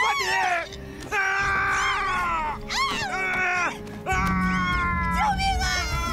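Screaming: four long, high-pitched, strained cries of distress in quick succession, with a low steady rumble joining about four seconds in.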